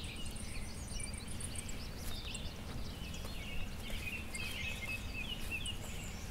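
Outdoor ambience of several small birds chirping and singing, with a quick run of high notes in the first second or so, over a steady low background rumble.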